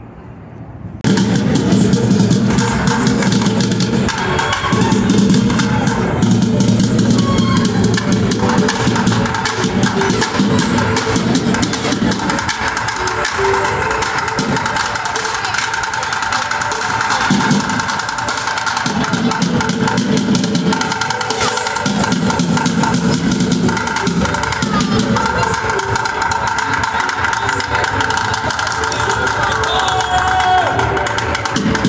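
Street performer drumming on upturned plastic buckets: fast, dense runs of sharp hits and rolls that start suddenly about a second in and keep going without a break.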